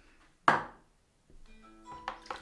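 A single sharp knock of a hard object about half a second in, dying away quickly. Near the end it is followed by a brief cluster of steady, chime-like tones.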